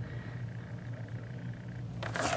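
Quiet room tone with a steady low hum and no other distinct sound.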